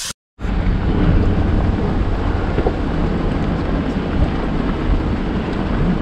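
Hummer H3 driving on a rocky dirt trail: a steady, loud rumble of engine and tyres with wind buffeting the microphone, after the sound drops out for a moment at the start.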